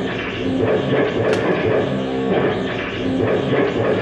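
Drum kit played hard and continuously in a dense, noisy barrage, with a sharp crash about a second in, over a repeating low pitched pattern.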